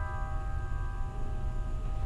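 Piano notes left ringing after a chord, slowly fading away with no new notes struck, over a low steady hum.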